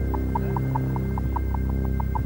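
A car engine running: a steady low hum with a quick, slightly uneven ticking over it, about seven ticks a second.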